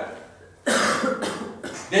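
A person coughing: one sudden harsh cough about two-thirds of a second in, trailing off over about a second.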